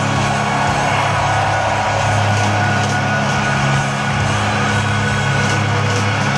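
Live rock band holding a long, steady chord, with the crowd cheering and whooping over it.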